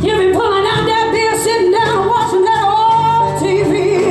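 Female blues vocalist singing held, wavering notes over a live electric blues band with bass, drums and electric guitars.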